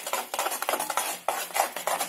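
A metal spoon scraping and knocking against a metal kadai as it stirs a thick, sticky mohanthal mixture of roasted gram flour and sugar syrup. The scrapes and knocks come in quick, irregular succession.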